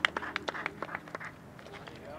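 Quick, irregular sharp clicks or taps, several a second, thinning out about a second in and leaving a quiet outdoor background.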